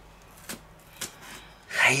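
Quiet room tone with two faint, sharp clicks about half a second apart, then a voice starts speaking near the end.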